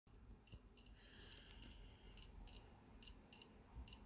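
Faint, short, high-pitched electronic beeps in pairs, about a pair a second, from an XPin Clip PIN-cracking box signalling that it has found the iPhone's passcode.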